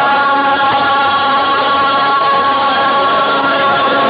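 Live qawwali: a group of male voices holding long sustained notes together in chorus, with harmonium underneath.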